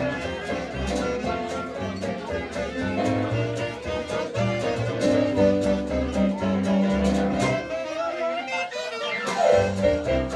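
Live hot jazz band playing an instrumental passage, with clarinet and saxophone over double bass and a steady drum beat. Near the end there is a fast downward glide in pitch.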